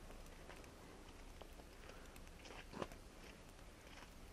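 Faint crunching footsteps in snow, irregular, with one sharper crunch near three seconds, over a low steady background rumble.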